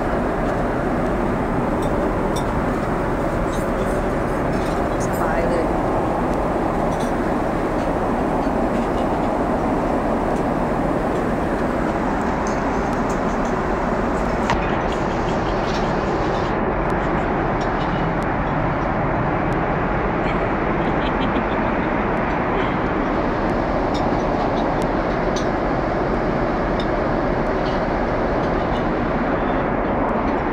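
Steady airliner cabin noise in flight: an even rush of airflow and engine noise that holds at one level throughout.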